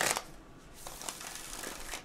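A deck of tarot cards shuffled by hand. A riffle shuffle ends just after the start as the cards are bridged back together, followed by softer rustling and light clicks as the deck is handled and shuffled again.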